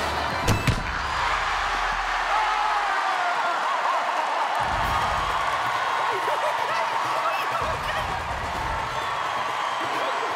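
Two sharp thuds in quick succession about half a second in, a football struck hard and hitting the goalkeeper, followed by a steady crowd cheering with overlapping shouts and whoops.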